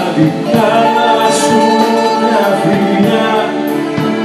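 Live Greek popular song: a male singer over a band of bouzouki, violin, keyboards and drums.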